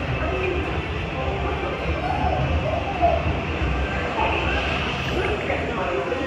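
Dark-ride car rolling along its track with a steady low rumble, faint voices in the background.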